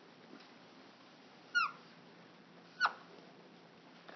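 Dry-erase marker squeaking on a whiteboard: two short squeaks that fall in pitch, about one and a half seconds in and again near three seconds, over faint room tone.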